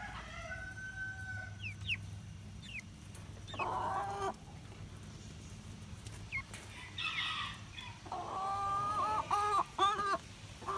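Chickens calling and squawking: a held call early on, a few short rising chirps, another call just before the middle, and a long wavering call in the last two seconds.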